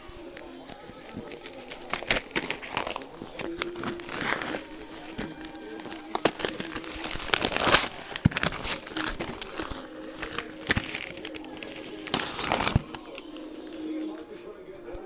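A package being opened by hand: irregular crinkling, rustling and ripping of the packaging, loudest about halfway through and again near the end.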